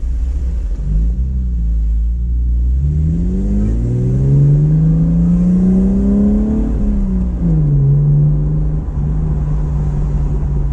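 The 2014 Camaro RS's 3.6-litre LFX V6 heard from inside the cabin. It accelerates hard from about three seconds in, its note climbing steadily for nearly four seconds, then drops back sharply around seven seconds and settles into a steady run.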